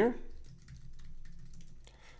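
Computer keyboard being typed on: a quick run of keystrokes.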